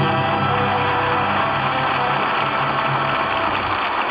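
Studio orchestra playing the programme's closing theme music, with held chords.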